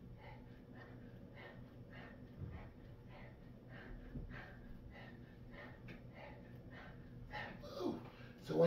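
Faint, quick breathing of a man straining through calf raises, short puffs about twice a second, over a low steady hum.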